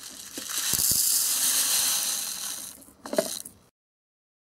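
Konapun rice-powder granules pouring from a paper packet into a plastic toy rice cooker bowl: a steady hiss for about two and a half seconds, followed by a few light clicks and a rustle of the packet.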